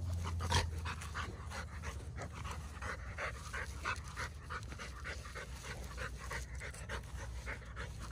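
A large dog panting hard and quickly, about three breaths a second, while it plays with a ball.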